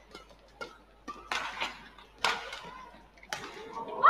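Badminton rally: sharp racket hits on the shuttlecock, several of them about a second apart.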